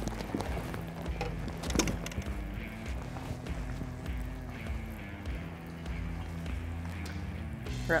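Background music with low sustained chords.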